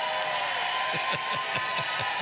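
A man laughing in a run of short bursts, each falling in pitch, over the noise of a clapping congregation and a steady held tone.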